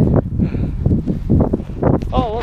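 Wind buffeting the microphone: a loud, irregular low rumble that rises and falls in gusts.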